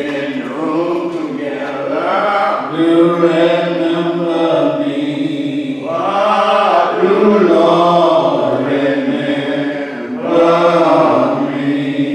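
Slow church singing of a hymn, with long held notes that glide from one pitch to the next.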